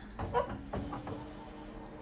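Fabric rustling as a dress is scrunched up by hand on a photocopier's glass, with a faint steady hum underneath.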